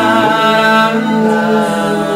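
Mixed a cappella vocal group of men and a woman singing close harmony, holding long sustained chords; the lowest voice steps up to a new note just after the start.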